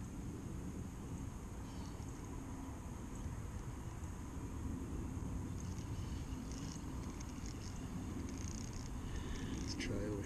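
Steady low rumble of a light breeze buffeting the camera's microphone, with faint scattered high ticks in the second half.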